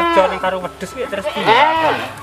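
Goat bleating twice: two wavering calls that rise and fall in pitch, the second about one and a half seconds after the first.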